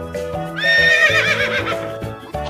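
Horse whinnying once, a high, quavering call starting about half a second in and lasting about a second and a half, over background children's music.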